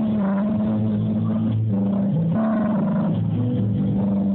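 Live band playing guitars and keyboard, with held low bass notes that change every second or so.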